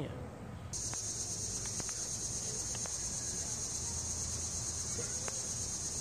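Steady high-pitched drone of an insect chorus, starting suddenly under a second in, with a few faint clicks beneath it.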